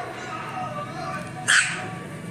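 A Pomeranian puppy gives one short, high yap about one and a half seconds in, over background music.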